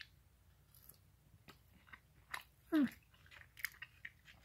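A person chewing jalapeño tater tots: faint, scattered mouth clicks and chewing sounds.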